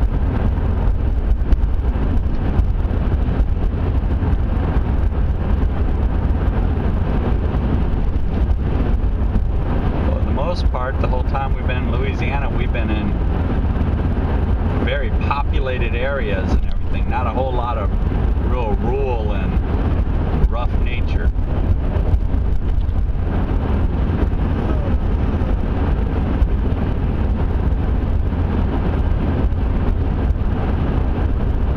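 Steady road and engine noise of a car cruising on a highway, heard from inside the cabin as a constant low rumble. Voices talk briefly in the middle.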